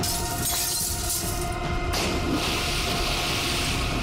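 Glass pane smashed with a metal rod: a shatter right at the start, then a second, longer crash of breaking glass about two seconds in, over dramatic background music.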